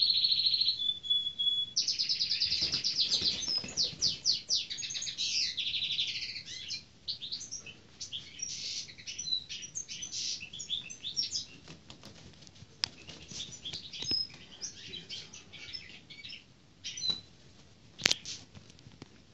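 Eurasian sparrowhawk giving a rapid, high-pitched chattering call in long runs for the first six seconds or so, then in shorter scattered bursts, with its wings flapping as it is handled.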